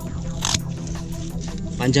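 Background music, with a single sharp snip of scissors cutting through a hibiscus bonsai root about a quarter of the way in.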